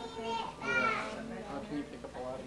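Indistinct voices of children talking and playing, with one high-pitched child's voice rising louder about halfway through.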